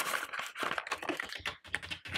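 A stack of paper banknotes being handled and slid into a paper cash envelope, with a dense run of crisp rustles and light ticks.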